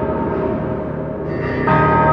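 Music: sustained, bell-like chord tones ringing on, with a new chord struck near the end.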